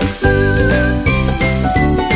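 Background music: a bright, tinkling instrumental with a steady rhythm of changing notes and a wavering high melody line.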